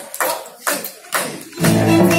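A live band with violins and guitar starting a song: a few sharp lead-in strokes, then the full band comes in about one and a half seconds in.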